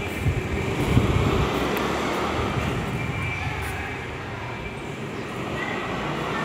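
Rumbling road-traffic noise, louder in the first half and dipping briefly about four to five seconds in.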